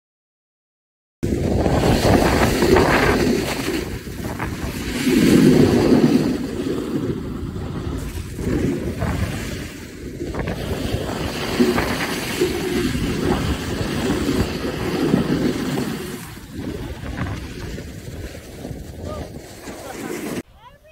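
Wind buffeting the microphone and snowboard edges scraping over snow during a fast ride down a slope. The sound is loud, uneven and rushing, and it starts suddenly about a second in.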